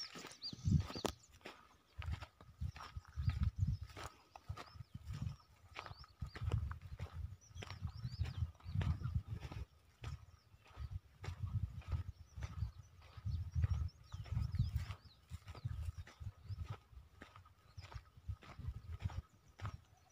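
Footsteps crunching over dry grass and lumpy soil at a walking pace, with irregular low rumbling on the phone's microphone and faint high chirps now and then.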